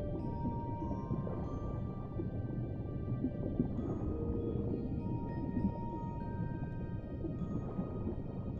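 Music-box lullaby: slow single notes, each ringing on and overlapping the next, over a steady deep, muffled underwater rumble with bubbling.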